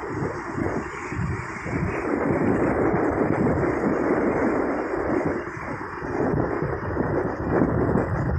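Strong wind buffeting the microphone, a loud rumbling noise that swells and eases in gusts.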